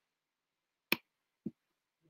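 A single sharp click about a second in, followed by a short, softer low blip, against otherwise dead-silent video-call audio.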